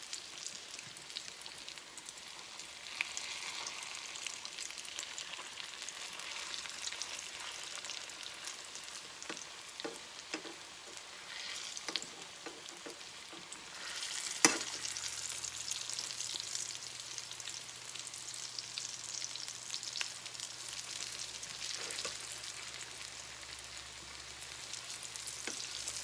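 Papas rellenas (stuffed mashed-potato balls) frying in hot olive oil in a skillet, with a steady crackling sizzle as they are turned with metal utensils. Occasional clicks of metal on the pan, and one sharp clink about halfway through.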